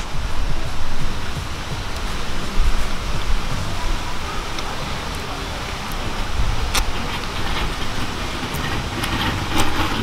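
Steady outdoor background rumble and hiss, heaviest in the low end and wavering in level, with a few faint light clicks.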